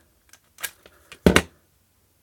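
A few light plastic clicks and one sharper clack about a second and a quarter in, from the opened plastic nightlight housing and multimeter test probes being handled.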